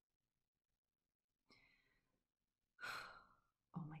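Near silence, then a woman's breaths: a faint one about a second and a half in and a louder one about three seconds in, just before she speaks.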